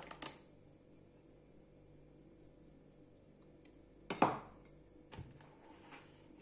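Kitchenware clicking against a square plastic container: one sharp tap just after the start, a louder clatter about four seconds in, then a few lighter clicks, with quiet between.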